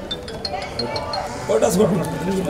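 Voices of people talking, louder near the end, with several light, high clinks in the first second.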